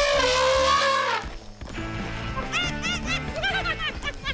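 Cartoon elephant trumpeting once for about a second with a slowly falling pitch, followed a second later by a run of short, high, squeaky chattering calls.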